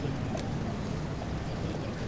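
Outdoor city ambience: a steady low rumble with no distinct source, with one brief click about half a second in.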